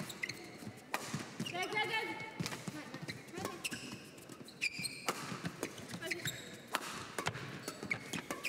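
Badminton rally: rackets striking the shuttlecock with sharp cracks every half second to a second, and court shoes squeaking on the floor as players lunge.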